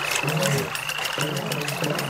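Rain falling as a steady hiss of drops, with a thin high held tone and a few short low pitched notes under it.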